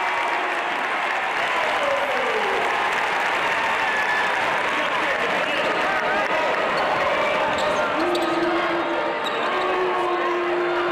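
Arena crowd noise at a college basketball game: a steady din of many voices, with a basketball being dribbled on the hardwood court. A steady held tone comes in near the end.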